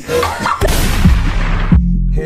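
Edited boom transition sound effect: a sudden loud noisy hit with heavy deep bass that swells and holds. The noise cuts off sharply shortly before the end, leaving a brief low tone.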